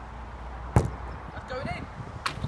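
A football kicked once: a single sharp thud of boot on ball about a third of the way in.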